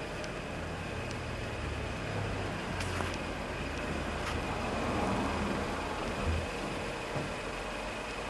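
Steady low hum of a Mercedes C180's engine idling, with a few faint clicks.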